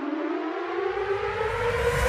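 Animation sound effect: a pitched whine glides steadily upward and grows louder, with a deep rumble building beneath it from about half a second in. It is the approach of an asteroid toward a flat earth.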